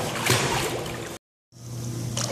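Pool water splashing and lapping as a puppy paddles, with a few sharper splashes. The sound cuts out completely for about a third of a second just past the middle.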